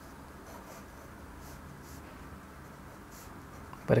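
Glass dip pen tip drawing on paper: faint, soft scratching strokes as lines are drawn, over low room tone.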